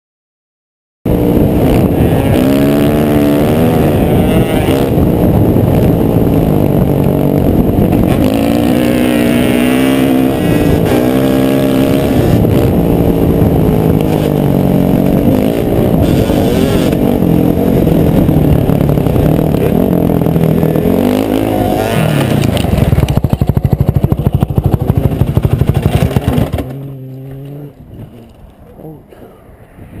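Honda CRF450 dirt bike's single-cylinder four-stroke engine running hard, its pitch climbing and falling as the rider accelerates and shifts, heard close with wind on a helmet microphone. It turns harsh and stuttering for a few seconds, then drops off suddenly about 27 seconds in, leaving a low engine note and wind noise as the bike goes down.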